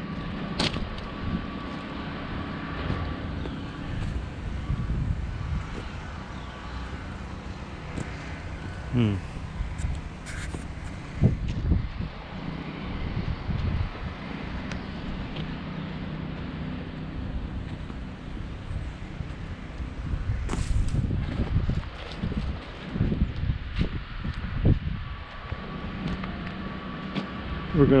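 Outdoor walking ambience: irregular low thumps of footsteps and handling on a body-worn camera over a steady low mechanical hum, with light wind on the microphone.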